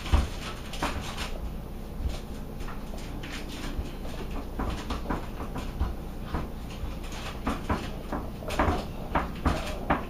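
Hands pressing and smashing raw ground pork flat on a foil-lined tray: irregular soft thuds and crinkles of aluminium foil, coming thicker near the end.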